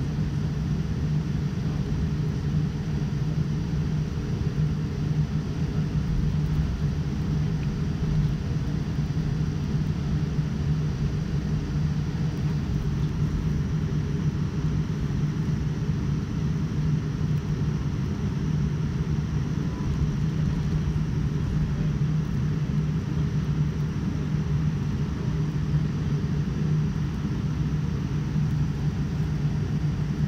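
Steady low rumble and hum inside the cabin of a Boeing 787-9 airliner taxiing on the ground, its engines at low taxi power, with no rise in level.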